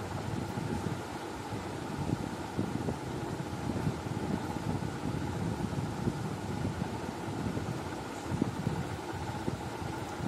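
Steady background room noise: an even low hum and hiss with no distinct events.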